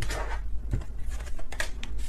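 A tarot deck being handled and shuffled, with a soft papery rustle and several light, sharp card clicks.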